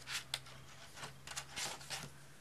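Paperback book being handled and turned in the hands, with about five short, soft rustles of its cover and pages.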